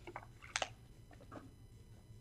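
A man drinking water from a plastic bottle: faint swallowing and small mouth and bottle clicks, the clearest about half a second in.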